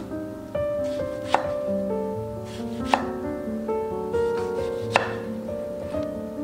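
A kitchen knife slicing through a ripe tomato and knocking on a wooden cutting board, three sharp knocks about a second and a half apart, over soft background music.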